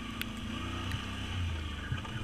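Can-Am Outlander ATV engine running at a steady low drone while riding, with a faint click about a quarter second in.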